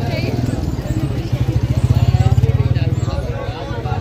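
A motorcycle engine passes close by, with an evenly pulsing low rumble that grows louder to a peak about two seconds in and then fades.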